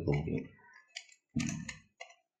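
Plastic layers of a stickerless Axis Cube clicking as they are turned by hand, with a sharp click about a second in, heard between two short bits of a man's voice.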